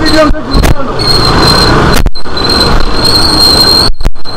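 Loud street traffic noise in a narrow lane, with motor scooters riding past close by and a thin, steady high whine throughout. A few brief voices come in the first second.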